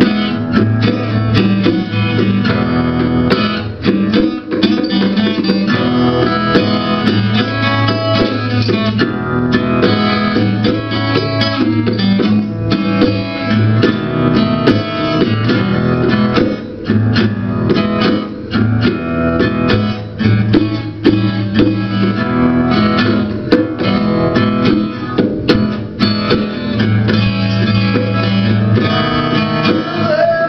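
Acoustic guitar and bongos playing an instrumental blues passage: the guitar plucks and strums over repeating low notes while the bongos are struck with the hands in a steady pattern.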